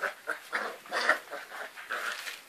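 Puppies making a run of short, irregular vocal sounds while tugging and scuffling over a towel in play, loudest about a second in.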